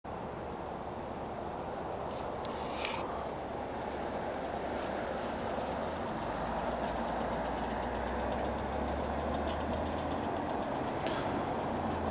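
A car driving along a snow-covered road: steady tyre and engine noise that grows slowly louder, with a low engine rumble joining about halfway through.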